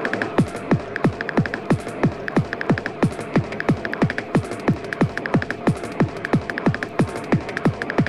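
Fast, hard electronic tekno from a DJ mix, driven by a pounding kick drum whose pitch drops on each hit, about three kicks a second, over a steady droning tone and bursts of high ticking percussion.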